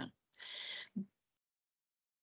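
Mostly silence on a webinar audio feed, with a faint short in-breath from the presenter near the start and a brief low vocal sound about a second in.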